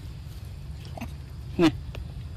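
A young macaque monkey gives one short call that falls in pitch, about one and a half seconds in, over a low steady background rumble with a faint click.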